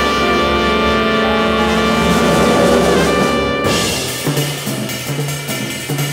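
Recorded jazz with brass. A loud held ensemble chord cuts off about three and a half seconds in, and a quieter passage with a bass line follows.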